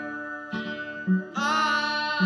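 Rhythm-and-blues soul ballad record playing: guitar and bass, with a long, loud high note coming in about two-thirds of the way through.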